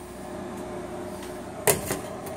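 A fixed-blade knife being drawn out of its nylon sheath, with one short, sharp scrape about three-quarters of the way through, over a steady low background hum.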